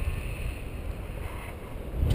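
Wind buffeting the camera microphone in flight under a tandem paraglider: a steady low rumble.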